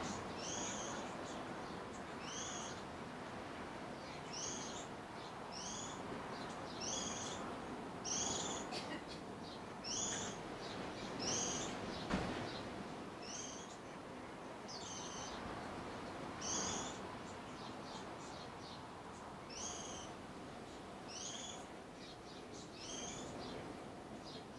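Goldfinch calling over and over, a short high two-part note every second or two, over a steady background hiss. One soft knock about halfway through.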